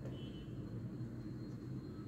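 Faint steady low hum of background noise with no distinct event, and a brief faint high tone just after the start.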